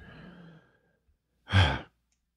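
A man's short sigh, one quick breath out with a bit of voice in it, about a second and a half in, after a faint trailing breath.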